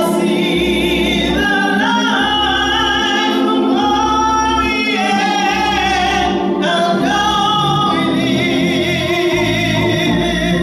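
A woman singing solo in a church, holding long notes with vibrato, over an organ accompaniment of sustained low bass notes that change about once a second.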